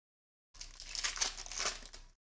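Foil trading-card pack wrapper crinkling as it is torn open by hand, starting about half a second in.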